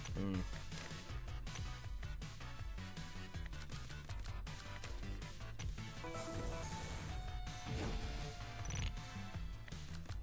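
Pragmatic Play's Saiyan Mania online slot playing its background music with a steady bass beat, over short clicks and knocks as the symbols drop. About six seconds in, a short run of chiming tones sounds with a small win.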